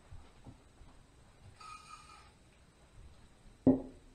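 Handling sounds at a work table: a faint, brief high squeak about one and a half seconds in, then a single sharp knock near the end, as of a hard object set down on the table.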